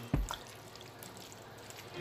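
Faint sound of liquid shifting in a pan as beef, onion and celery are stirred in a little just-added hot water with a wooden spoon, with a short knock right at the start.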